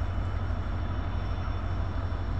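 Steady low rumble of a WDP4D diesel locomotive's EMD 16-710 two-stroke V16 engine running.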